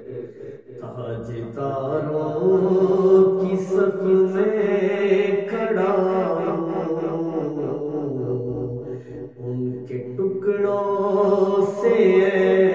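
A man's solo voice chanting a hamd, a devotional Urdu poem in praise of God, in long, melismatic held notes that glide between pitches. There are short breaks for breath about half a second in and near nine seconds.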